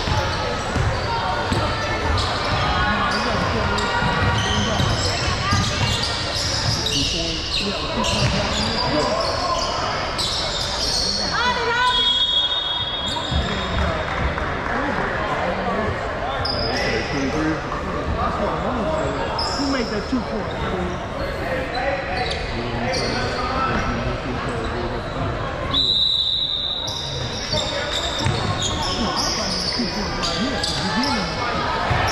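Basketball game sounds in a reverberant gymnasium: a ball bouncing on the hardwood and steady crowd and player voices. Two brief high shrill tones cut through, one near the middle and one near the end.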